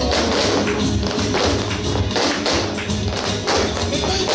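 Flamenco music with sharp percussive strikes two or three times a second, fitting a group of flamenco dancers stamping footwork in heeled shoes on a wooden floor.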